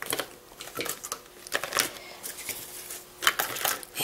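Clear vinyl toiletry pouch being handled as it is packed full: plastic crinkling and small bottles and tubes clicking against each other. It comes as a string of short clicks and rustles, with louder knocks about halfway through and again near the end.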